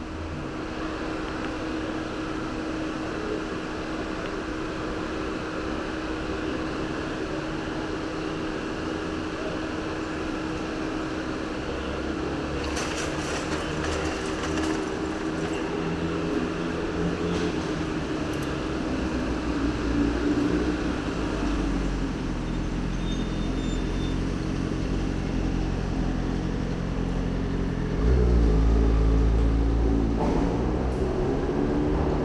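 Busy city street traffic under an elevated railway: vehicles running past with a steady hum. A few rattling clicks come about halfway through, and a deep rumble builds in the second half and is loudest near the end.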